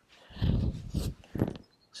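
Short breathy rushes of movement noise as a golf iron is swung from address through to the finish without striking a ball, three bursts about half a second apart.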